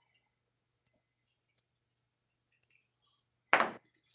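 A few faint, scattered clicks and clinks as a row of watercolour half pans is handled and set down on a table, followed by a short louder sound near the end.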